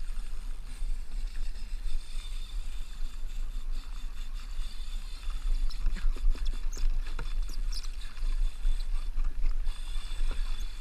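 Choppy seawater slapping and lapping against a kayak hull under a steady low rumble of wind on the microphone, with a run of small splashes and drips from about halfway through.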